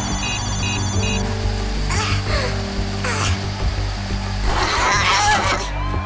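Tense background score over a steady low drone, with fast electronic beeping that stops about a second in. Two short rushing sweeps come about two and three seconds in.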